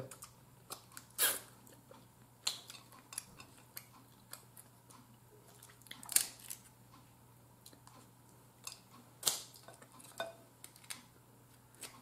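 Snow crab leg shells being cracked and pulled apart by hand, with scattered small clicks and crackles of shell and a few louder snaps, about a second in, around six seconds and around nine seconds.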